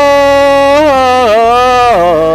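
A singer holding one long, loud high note over the song's backing music, the pitch dipping briefly about a second and a half in before the note ends.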